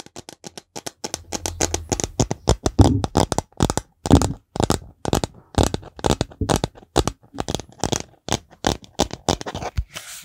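Fingertips and nails tapping and scratching quickly on a plastic shaker bottle held close to the microphone. The taps are sharp and irregular, several a second, and come thick from about a second in.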